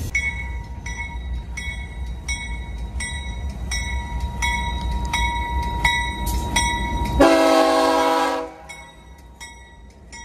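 Freight locomotive horn sounding one loud chord blast of about a second and a half, seven seconds in, as a BNSF-led train approaches. Under it a bell rings steadily about twice a second and keeps going after the horn.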